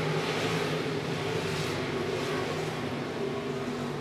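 Several IMCA stock cars' V8 engines running together around a dirt oval, a steady drone of overlapping engine notes.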